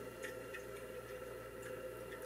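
Quiet room tone: a faint steady hum with a couple of faint ticks.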